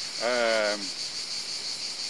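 Steady, high-pitched chorus of insects shrilling in the summer heat, continuous throughout.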